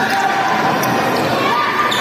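A basketball bouncing on a gym court amid the steady chatter of a crowd.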